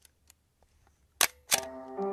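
Two sharp clicks of a film camera's shutter mechanism about a third of a second apart near the end, with a few faint ticks before them. Music with held tones begins right after the second click.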